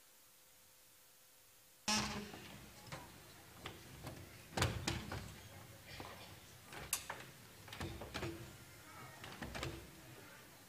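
A wooden piano bench is shifted and set on a wooden stage floor, giving an irregular run of knocks and scrapes. They start suddenly about two seconds in, after near-quiet room tone.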